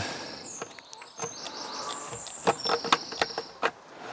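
A few light clicks and knocks as the plastic fuel cap is twisted on and tightened on a two-stroke strimmer's tank, loudest a couple of seconds in. Birds chirp in the background throughout.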